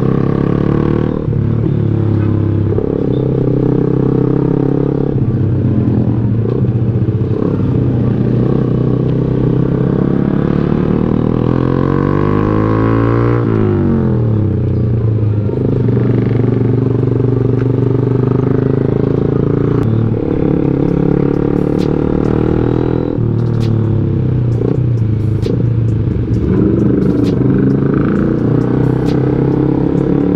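Motorcycle engine running as the bike rides along, its pitch holding and then stepping with the throttle. The revs drop and climb again about halfway through, and sharp light ticks come in the second half.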